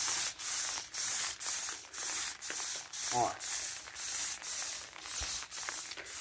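Hand pump sprayer spraying fertilizer solution through its wand nozzle, a high hiss coming in short pulses about twice a second.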